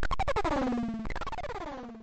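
Closing bars of a tribal techno track: a rapidly pulsing synthesizer line that twice swoops down in pitch, about a second apart. It fades away toward the end.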